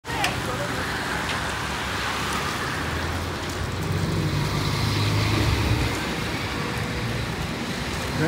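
Street traffic noise with a motor vehicle engine running close by, loudest from about four to six seconds in.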